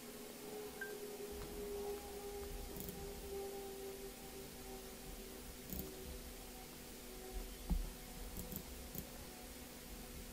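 Quiet room tone with a faint steady hum of a few held tones, a few soft clicks and one low thump about three-quarters of the way through.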